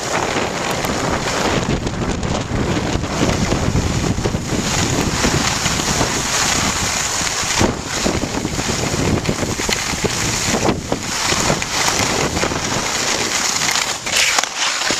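Wind rushing over the microphone of a camera carried by a skier moving downhill, with the hiss and scrape of skis on packed snow. The noise is steady and dips briefly a couple of times.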